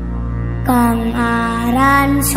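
Sholawat devotional song: over a steady low drone, a singer's voice comes in less than a second in, holding long notes that slide from one pitch to the next.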